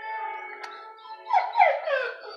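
A dog whining: two short, high cries that fall in pitch, close together, near the end.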